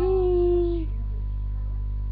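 A domestic cat gives one drawn-out, steady-pitched meow lasting under a second.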